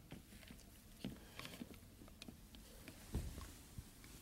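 Faint handling noises of a hot wet towel being worked around a glass Galileo thermometer: scattered soft taps and rustles, with a low thump a little after three seconds in.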